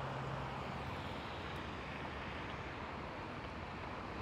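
Steady, even background noise with no distinct sounds in it, and a faint low hum that fades out about a second in.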